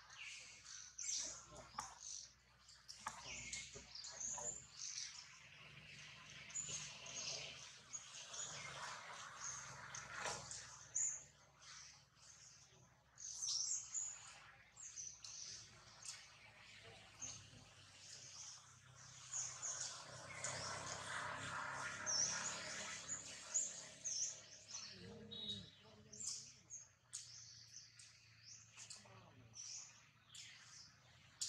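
Small birds chirping in many short, high calls that keep coming, at a low level.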